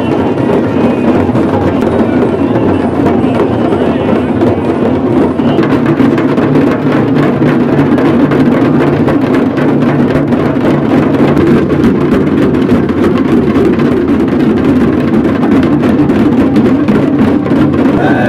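Loud, continuous drumming and percussion music, fast dense strikes, over the noise of a crowd.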